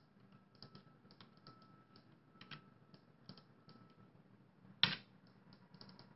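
Faint, irregular computer-keyboard keystrokes, as names are typed into the plot labels, with one louder tap about five seconds in.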